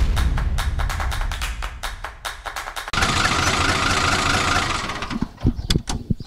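A short logo music sting mixed with engine-like sound effects. It starts suddenly with a heavy low beat and rapid strokes, turns into a dense rushing noise about three seconds in, and fades out about five seconds in. A few sharp clicks follow near the end.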